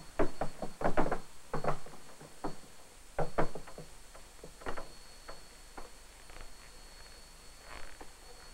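Irregular knocks and thumps from a large free-standing reflector panel being pushed and turned across a stage floor, thickest in the first two seconds and sparser after. A faint steady high tone runs underneath.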